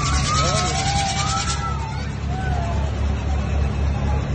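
Fairground noise: a steady low engine-like hum runs throughout. Voices call out over it in the first couple of seconds, and fast high ticking stops about a second and a half in.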